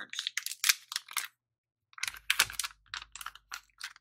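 Rapid small clicks and crinkles of plastic packaging and containers being handled, with a brief break in the sound a little over a second in.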